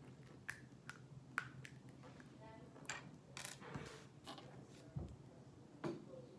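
Small plastic Lego pieces clicking and tapping as they are handled and fitted together: a dozen or so faint, sharp clicks at irregular intervals. A brief hum comes a little past two seconds in.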